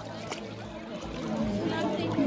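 Swimming-pool water sloshing and lapping as a baby is dipped into it and a man wades, with faint voices in the background.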